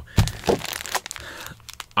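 Foil Ernie Ball Super Slinky guitar-string packets crinkling as a stack of them is picked up and handled: a couple of sharper crackles in the first half second, then softer crinkling.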